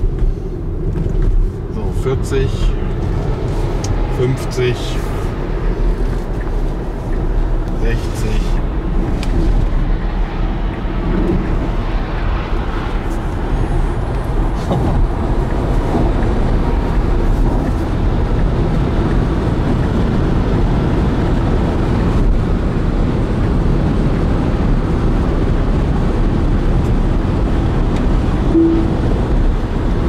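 Steady road and wind noise inside the cabin of a Tesla Model Y at motorway speed, about 120 to 130 km/h, as a low, even rumble with no engine sound. A few brief knocks or bumps come in the first several seconds as the car joins the motorway.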